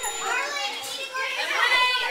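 A group of children's high-pitched voices talking and calling out over one another, getting louder in the second half.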